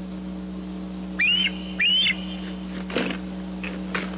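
Juvenile bald eagle giving two short whistled calls, each rising then falling, followed by two brief rustling bursts as it takes off from the nest. A steady low electrical hum lies underneath.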